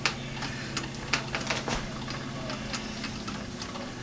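Irregular light clicks and ticks from a home-made two-wheel straddle knurling tool rolling under pressure on a mild steel workpiece as the lathe spindle is turned by hand and the carriage is fed along, over a steady low hum.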